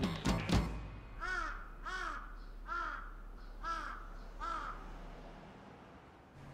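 Large-billed (jungle) crow cawing five times, about one caw every 0.8 s, each caw rising and then falling in pitch.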